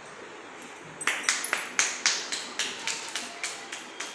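A toddler's hand tapping against a door, a run of sharp taps about four a second with a slight ringing, starting about a second in.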